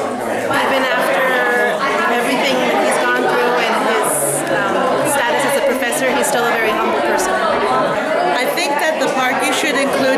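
Overlapping chatter of many people talking at once in a large room.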